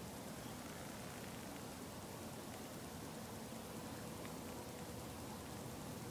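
Faint, steady background hiss with no distinct events; a faint steady hum joins it about halfway through.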